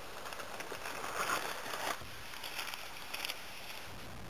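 Cardboard shipping box being opened by hand: soft rustling and scraping of the cardboard flaps, loudest a little over a second in, followed by a few light clicks.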